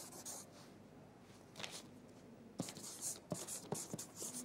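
A pen writing on paper, faint: several short scratchy strokes with a few small ticks in between.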